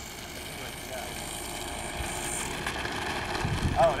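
Electric motors and propellers of a Hobby King Ju 52 RC model running steadily on the ground, with a thin high whine that cuts off about two and a half seconds in.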